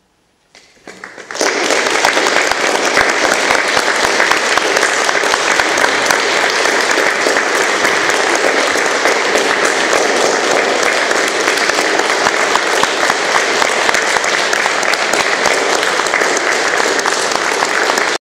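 Audience applauding. After a brief moment of silence, a few scattered claps come in and swell within a second into steady, dense applause that holds to the end.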